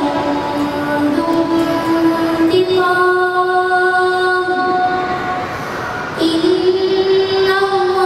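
A boy's voice reciting the Quran aloud in melodic tajweed style, drawing out long held notes that step between pitches. One phrase fades out about four and a half seconds in, and a new one begins at about six seconds.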